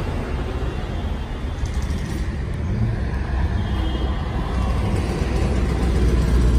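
Steady road-traffic noise from the street, mostly low in pitch, growing a little louder near the end.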